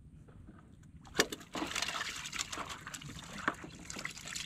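Water splashing and trickling close beside a wooden boat, as a person swims alongside and hands work in the water. It starts about a second in with a sharp knock, then carries on as a busy patter of small splashes and drips.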